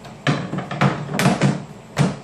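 Router table insert plate knocking and clunking in a series of sharp knocks as it is pressed and shifted into its pocket in the wooden table top.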